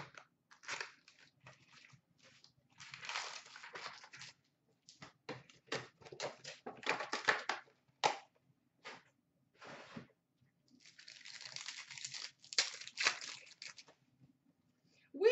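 Foil wrappers of Upper Deck Artifacts hockey card packs crinkling and tearing as they are ripped open by hand, in three longer stretches with short clicks between.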